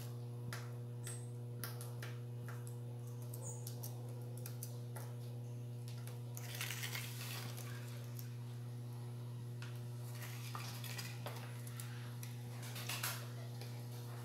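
Plastic bottle holding freshly mixed homemade soap being handled and squeezed: scattered clicks and crinkles of the plastic, with a short louder rustle about halfway and another near the end, over a steady low hum.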